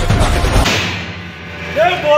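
Loud street-band drumming, with a dense beat of drum strokes, cuts off suddenly just over half a second in. After a short lull, a group of men starts shouting near the end.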